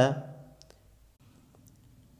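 A man's voice trails off at the start, then near silence with two faint, short clicks, about two-thirds of a second in and again about a second and a half in.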